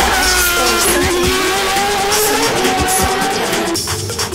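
A Formula One car's engine running at high, steady revs, its pitch wavering and dipping slightly near the end, heard over electronic background music with a steady beat.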